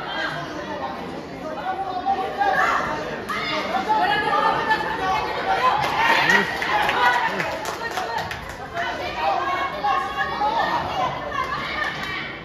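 Overlapping voices of spectators and corners in a large, echoing hall, shouting and chattering during a boxing bout, with a few brief sharp clicks near the middle.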